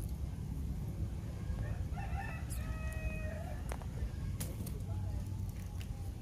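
An animal call, drawn out for about a second and a half and starting about two seconds in, over a steady low rumble, followed by a few sharp clicks.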